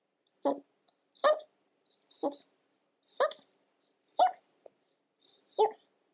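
A woman's voice counting stitches aloud in Danish, one short number roughly every second with silence between, the numbers said in pairs as she moves alternate knit and purl stitches onto two needles.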